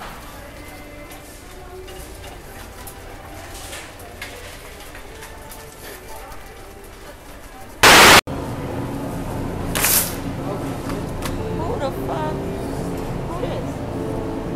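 A short, loud burst of TV static, a glitch transition effect about eight seconds in, set against a background of indistinct voices.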